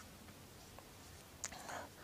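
Near silence of a small room with the presenter's faint breathing. About halfway through there is a small click, then a short, soft breath.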